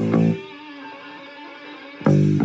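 Hard rock band with an electric bass playing along; about half a second in the band and bass stop, leaving only a held chord ringing quietly, and the full band with bass comes back in right at the end.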